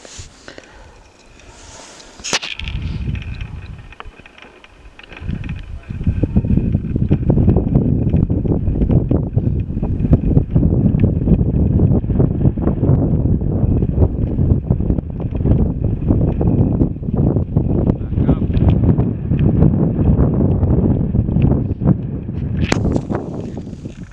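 Wind buffeting the microphone: a loud, gusting low rumble that starts about five seconds in and runs until just before the end, with a couple of sharp clicks.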